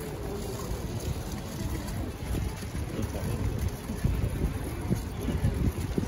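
Wind buffeting the microphone of a handheld camera carried outdoors: a low, uneven rumble that swells in gusts, over faint street ambience.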